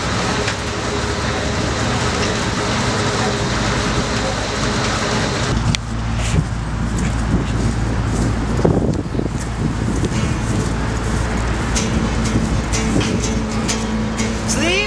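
Outdoor fairground ambience: a steady low hum of running machinery with voices and music in the background and scattered clicks and knocks.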